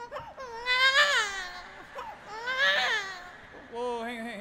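A man's high-pitched vocal wail, shown off as a novelty vocal trick: two long cries, each rising and then falling in pitch.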